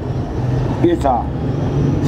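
A steady low rumble, with a man speaking briefly about a second in.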